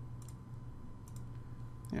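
A few faint computer mouse clicks, in small pairs, over a low steady hum.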